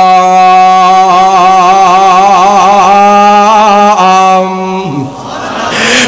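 A man's voice holding one long melodic note in chanted Quranic recitation, the drawn-out close of a verse, with a wavering ornament in the middle before it dies away about five seconds in.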